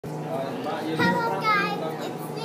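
A young girl's voice making short, indistinct sounds, loudest about a second in and again a little later, over a steady low hum.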